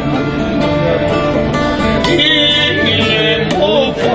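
Live Greek folk music: an acoustic guitar and a round-backed long-necked lute played together, plucked and strummed steadily, with a man's singing voice coming in near the end.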